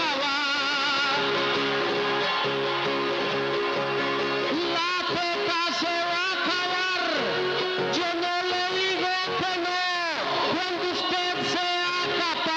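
Trova paisa: a man singing an improvised verse into a microphone over acoustic guitar accompaniment. Held instrumental notes open it, and the sung line with wavering pitch comes in strongly about halfway through.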